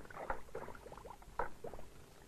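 A large vat of liquid boiling over a fire, with irregular bubbling pops.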